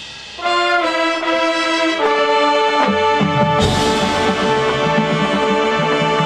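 Marching band brass section entering loudly about half a second in with held chords that step through several changes. Near the middle a sudden full-band hit lands with deep percussion, and the brass holds a loud chord over the drums to the end.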